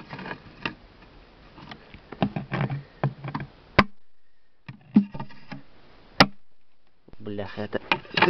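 Wooden beehive parts being handled: frames and boards knocking and scraping, with two sharp wooden knocks about four and six seconds in.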